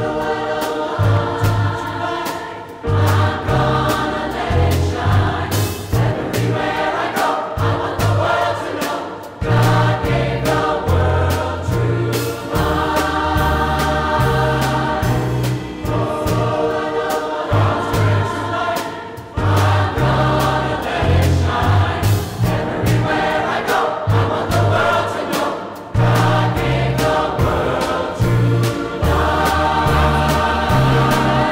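Large mixed choir singing with instrumental accompaniment, a low bass line moving underneath in steady changing notes, the phrases separated by brief dips.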